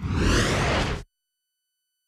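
Broadcast transition whoosh sound effect: a rush of noise with a low rumble and a falling sweep, lasting about a second and cutting off abruptly, followed by silence with only a faint steady high tone.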